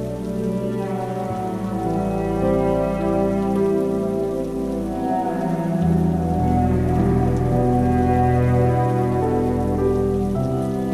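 Slow, sustained cello and piano music over a soft synth pad, with a steady rain recording beneath it. The low notes change about a second in and again near six seconds.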